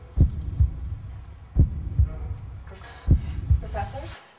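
Heartbeat sound effect: low double thumps, lub-dub, repeating about every second and a half over a low hum.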